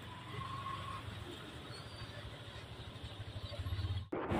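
Motor vehicle engine running with a low, steady hum over outdoor noise, growing louder toward the end.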